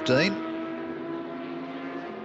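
A steady, even drone holding a few fixed tones, with no rise or fall in pitch. It follows the clipped end of a commentator's word in the first moment.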